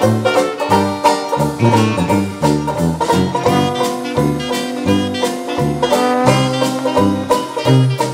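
Ragtime instrumental music with a steady, bouncing bass line under the tune.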